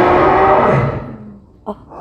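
A loud sustained musical chord from the film's soundtrack, played over cinema speakers, rings and fades away over about a second and a half. A brief exclamation follows near the end.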